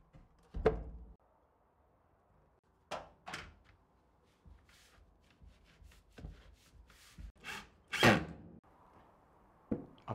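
Knocks and thunks from a painted wooden mailbox being handled and set down, with an aluminium sheet being fitted on its lid. There is a sharp knock about a second in, two more near three seconds, a scatter of light clicks, and the loudest knock at about eight seconds.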